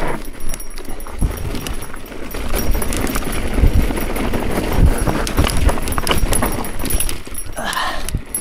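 Mountain bike rolling fast down a dry, rocky dirt trail: tyres on dirt and stones with a continual irregular clatter of knocks and rattles from the bike and its handlebar bags. A brief higher-pitched sound comes in near the end.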